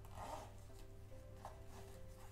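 A small zipper on a doll-sized fabric backpack is pulled closed, giving a soft, faint zip near the start. Quiet background music plays under it.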